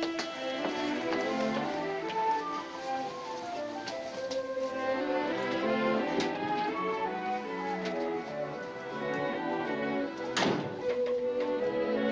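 Orchestral film score playing quick, busy, shifting notes. A few sharp knocks stand out from it, and a louder hit comes about ten seconds in.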